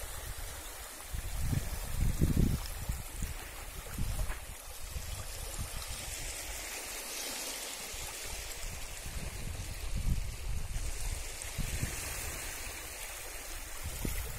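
Small waves lapping and trickling over stones in the shallow water of a rocky seashore, a steady wash that swells now and then. Irregular low rumbles run under it, the strongest about two seconds in.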